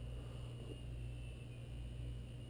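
Quiet room tone: a steady low hum with a faint, thin high whine over it, and no distinct sound.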